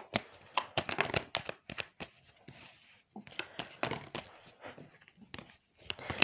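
A deck of oracle cards being shuffled and handled, with a run of light, irregular card clicks and slaps and a short lull in the middle; a card is dealt onto the cloth-covered table.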